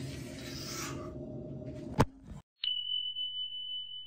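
Subscribe-button animation sound effect: a single sharp click about two seconds in, a moment of dead silence, then a steady high-pitched tone that holds without changing pitch. Before the click there is only faint room noise.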